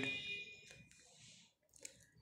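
A man's reading voice trails off at the end of a phrase, then near silence, with a faint steady high-pitched tone through about the first second.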